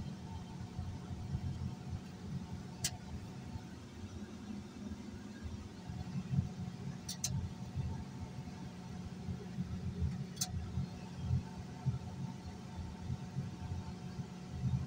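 Heavy tracked earthmoving machine's diesel engine running steadily, a low rumble heard from on board the machine. A few sharp clicks break in, two of them close together about halfway through.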